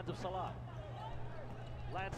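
A basketball broadcast commentator's voice in brief snatches over steady arena background noise, with a constant low hum underneath.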